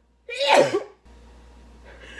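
A woman sneezes once, loudly and with her voice in it, about a quarter second in; a fainter breathy sound follows near the end.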